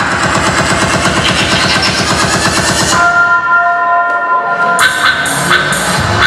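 Loud electronic music played for a dance battle: a fast run of rapid drum hits, then about three seconds in the beat drops out under a held synth chord, and the beat comes back near the end.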